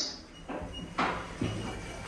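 Tecno passenger lift's automatic sliding doors moving, with a couple of clicks and a faint short high beep.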